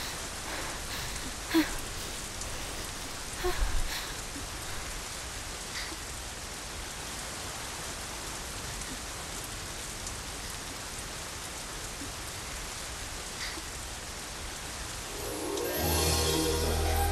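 Steady rain falling on stone, an even hiss with a few single louder drops. Music fades in just before the end.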